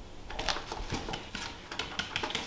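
Cats scampering: quick, irregular taps and clicks of paws and claws on a wooden floor and among books on a shelf, the kitten rummaging and scrabbling.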